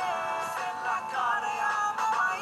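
Music: a pop song with a sung vocal line over its backing track.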